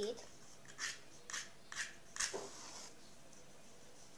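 A safety match struck against the side of its matchbox: four quick scratching strokes about half a second apart, the last one the loudest, with a short flaring hiss as the match catches.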